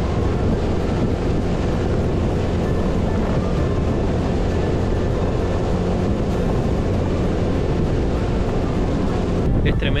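Motorcycle riding on a loose gravel road in strong wind: heavy wind buffeting on the microphone over the engine and the tyres running on loose stones, a steady rush throughout.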